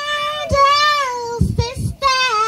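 A woman singing unaccompanied into a microphone: one long held note, then a phrase that bends and slides down in pitch, with a few low thumps on the microphone near the end.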